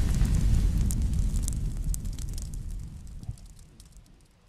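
Fire sound effect under a flaming-logo animation: a deep rumble with fine crackling that fades steadily away over a few seconds. No music is heard.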